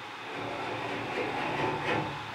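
A rumbling, rattling noise on the cell door, growing a little louder, heard by the occupants as someone banging furiously on the cell.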